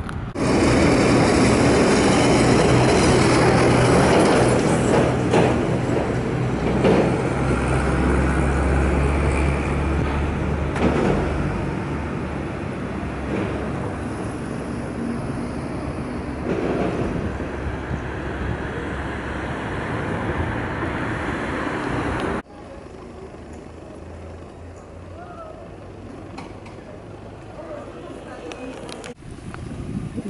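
Road traffic: loud noise of passing vehicles with a deep engine drone, strongest about eight to eleven seconds in. It cuts off abruptly about 22 seconds in, leaving a quieter street background.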